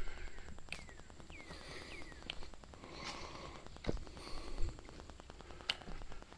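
Footsteps on a dry, leaf-covered dirt trail, with a few sharp snaps and crackles of twigs and leaves underfoot. About four short falling chirps sound close together in the first two seconds or so.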